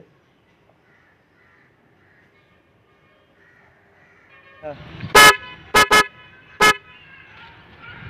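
Motorcycle electric horn on a Yamaha RX100 sounded in four short beeps about five seconds in: a slightly longer one, two quick ones close together, then one more.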